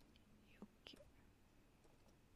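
Near silence: room tone with a couple of faint short clicks about half a second to a second in.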